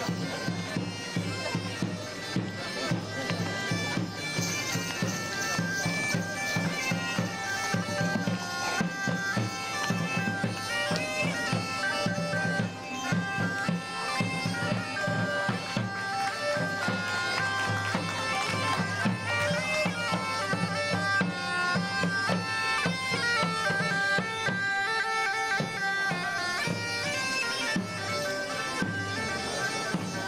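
Bagpipes playing a tune over a steady drone, the melody stepping from note to note without a break.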